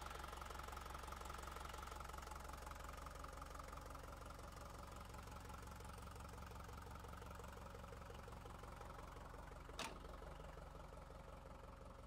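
The Lovol 504 tractor's diesel engine idling steadily and faintly. A single sharp click comes just before the end.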